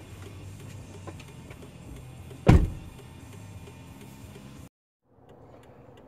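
A car door shut once with a solid thud about two and a half seconds in, over the low hum inside a parked car's cabin. Near the end the sound cuts out entirely for a moment.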